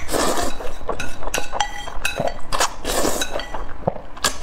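Close-miked slurping of spicy instant noodles in several loud, wet pulls, with wooden chopsticks clicking against the ceramic bowl and making it ring briefly between slurps.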